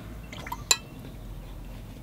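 A few light taps, then one sharp, ringing clink about three-quarters of a second in: a paintbrush knocking against a hard paint container while picking up fresh paint.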